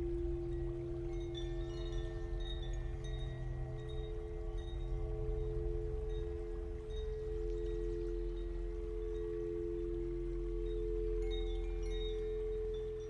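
Ambient background music: a sustained drone of two held tones with scattered, bright, chime-like notes over it.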